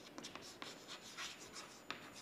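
Chalk writing on a blackboard: faint, scratchy strokes in quick succession, with one sharper tick near the end.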